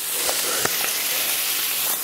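Chicken tenders sizzling in a stainless steel skillet on a gas stove, a steady frying hiss with a couple of faint clicks about half a second in.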